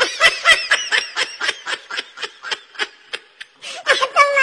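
High-pitched laughter in a long run of short bursts, about four a second, growing fainter toward the end.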